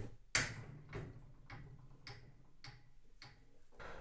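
Pendulum impact tester's half-kilogram hammer striking a 3D-printed PLA test bar once, sharply, about a third of a second in. A run of fainter ticks follows about every half second and dies away as the swing settles. The bar takes the blow without breaking.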